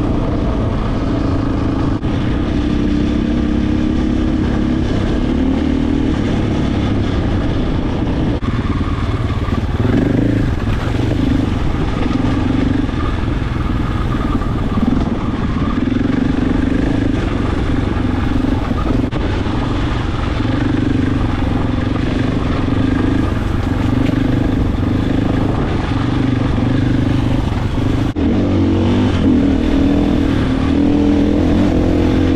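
A Husqvarna FE 501's single-cylinder four-stroke engine running under way on a dirt trail. Its pitch rises and falls with the throttle, with a few marked changes.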